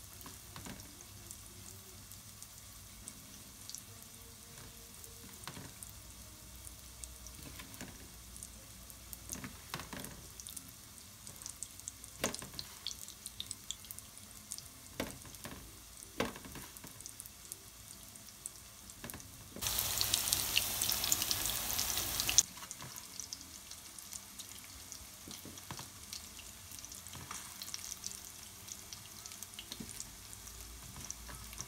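Hands pressing and patting fish fillets into coconut flour in a metal tray, with soft scrapes and light clicks against the tray. About two-thirds through, a loud rushing noise runs for about three seconds and cuts off sharply.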